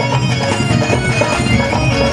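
Live Haryanvi ragni folk music: a reedy wind-instrument-like melody in long held notes over steady accompaniment.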